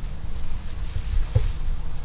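Wind buffeting the microphone outdoors: a low, uneven rumble.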